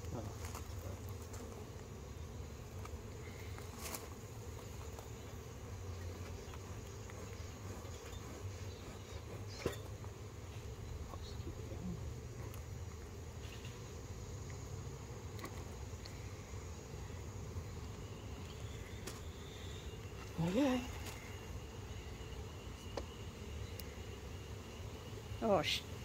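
Honeybees humming steadily around an opened hive super. A couple of short clicks sound over the hum.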